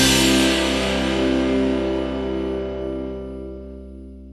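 A song's final chord held on guitar and slowly fading away.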